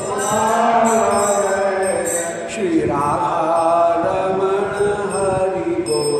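A man chanting a Sanskrit mantra in long, drawn-out notes that slide in pitch, with a short break between phrases about two and a half seconds in.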